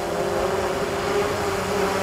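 3DR Solo quadcopter's motors and propellers buzzing steadily as it flies low and close, one even hum at a constant pitch over a soft rushing noise.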